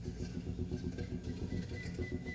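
Instrumental jazz with no singing: a dense rumble of rapid low notes from double bass and drums, with light high taps above.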